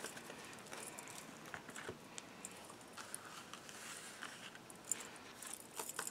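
Faint rustling and light clicks of a deck of oracle cards being shuffled and handled by hand, in irregular small bursts.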